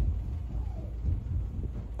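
Children running outside, heard from indoors as a low, muffled rumble of footsteps.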